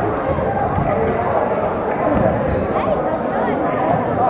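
Fencers' feet thumping and stamping on a wooden gym floor during a foil bout, among many voices in a large echoing hall. About two and a half seconds in, a high electronic tone from the foil scoring machine sounds for about a second, signalling a touch.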